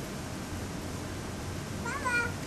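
Steady outdoor background hiss, then, just before the end, a short high-pitched call that rises and then falls in pitch, like a voice.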